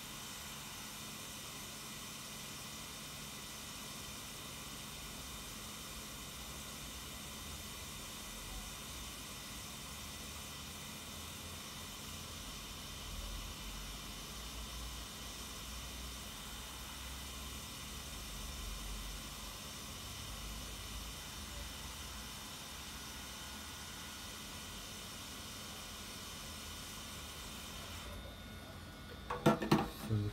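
Hot air rework station blowing a steady hiss onto a newly placed chip, heating it until its solder melts. The hiss drops away about two seconds before the end.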